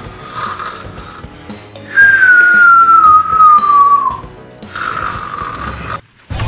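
Cartoon-style snoring: a rasping breath in, then a loud whistled breath out that falls slowly in pitch for about two seconds, then another rasping breath in near the end. Soft background music plays underneath.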